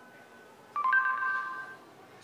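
Google voice search's end-of-listening chime through a phone's small speaker: a two-note electronic beep, lower note then higher, about a second in, ringing out for about a second as the spoken query is recognised.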